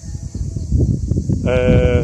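A man's drawn-out hesitation sound, a steady "ehh" about half a second long near the end, over a low rumble of wind on the microphone.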